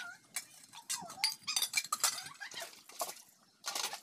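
Stainless steel dishes and cups clinking and clattering against each other as they are handled, rinsed and stacked. Short wavering animal calls sound in the background.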